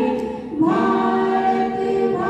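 A group of people singing together without instruments, in held notes. The singing drops briefly about half a second in, then a new phrase begins.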